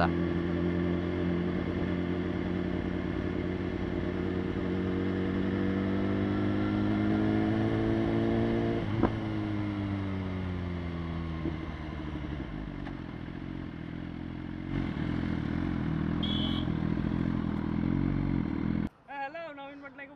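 BMW S1000RR inline-four engine running on the move. Its pitch climbs steadily, falls away after a click about nine seconds in, then runs lower and uneven before stopping abruptly just before the end.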